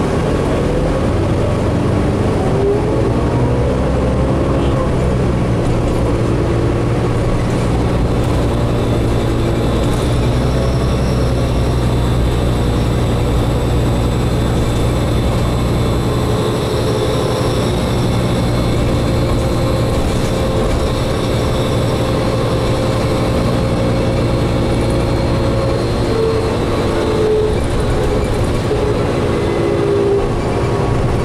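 Interior ride noise of a 2003 New Flyer DE40LF diesel-electric hybrid bus: the Cummins ISB diesel running with a steady low hum under the whine of the Allison EP40 hybrid drive. The whine rises in pitch a couple of seconds in and again near the end, as the bus gathers speed.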